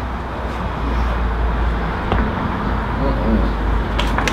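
Steady low rumble of outdoor background noise, with faint voice sounds a couple of seconds in.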